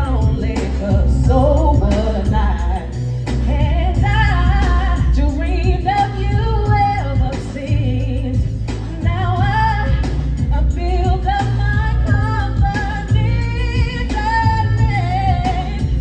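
A woman singing into a microphone over a loud backing track with a heavy, steady bass beat, played through a PA system.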